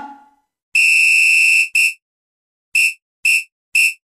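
Electronic beep tone sound effect: a steady high-pitched beep lasting about a second, a short beep right after it, then three short beeps about half a second apart.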